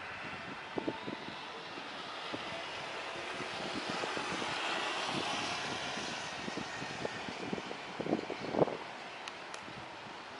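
Distant jet engines of a Citilink Airbus A320 running as it rolls along the runway: a steady rushing roar that swells to its loudest about halfway through and then eases off. A few short thumps cut across it, the loudest about two thirds of the way through.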